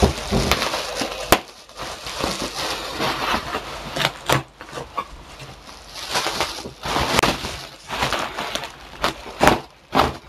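Bubble wrap being pulled and crumpled by hand: continuous crinkling with irregular sharp cracks.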